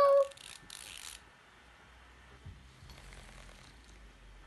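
Faint mechanical whirring and rattling of a hanging baby toy's built-in vibration mechanism, with a soft click about halfway and a low hum near the end.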